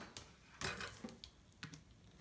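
About four faint, scattered clicks and taps from a metal ruler and a heat fuse tool being handled and set in place on a plastic cutting mat.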